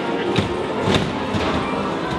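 Music playing, with two sharp knocks about half a second and a second in from the hand-worked handles and gears of an antique coin-operated arcade machine.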